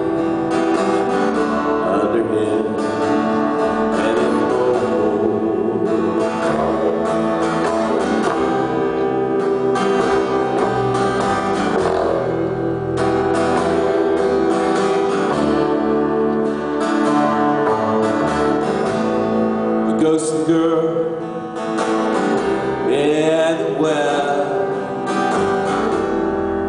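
Live acoustic guitar and double bass playing an instrumental passage of a folk song.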